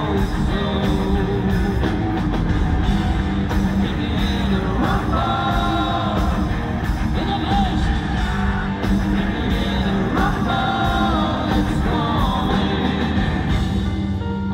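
Heavy rock band playing live: distorted guitars, bass and drums, with a man singing over them in places.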